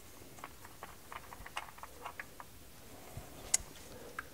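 Faint, scattered small clicks and ticks of a fuel pressure regulator being unscrewed by hand from the end of the fuel rail, with one sharper click about three and a half seconds in.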